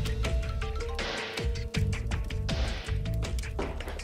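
Background music score: a held tone over strong bass with a steady run of percussive hits.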